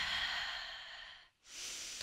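A woman breathing audibly, close to a headset microphone: one long, sighing breath that fades over about a second, then a second, shorter breath near the end.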